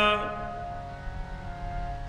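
Harmonium holding a steady chord of several reed tones between sung lines of Sikh kirtan. A man's sung note fades out just after the start, leaving the harmonium alone.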